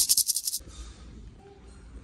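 A small painted maraca shaken quickly, a short run of rattles lasting about half a second at the start.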